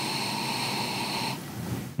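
A long, steady sniff through the nose held in a snifter glass, taking in the aroma of a beer; it tails off about a second and a half in.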